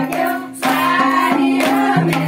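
A group of women sing a Teej song together in chorus, with a two-headed barrel hand drum played by hand and hand-clapping. The singing breaks briefly about half a second in, then picks up again.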